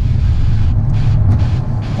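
The tuned Honda Civic Type R's turbocharged four-cylinder engine, fitted with an aftermarket downpipe and midpipe, running while the car is driven. It is a steady low drone heard from inside the cabin.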